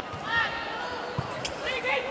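Live court sound of an indoor volleyball rally: a sharp ball strike about a second in, with short high calls from players over the hall's background noise.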